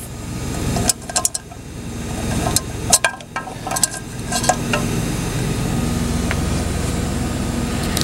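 Truck engine idling steadily, with several light clicks and knocks in the first half from the frying pan and things around it being handled.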